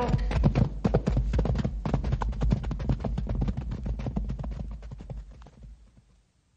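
Radio sound-effect hoofbeats of horses moving off at a quick pace, a dense run of clip-clops fading away toward the end, over a low steady hum.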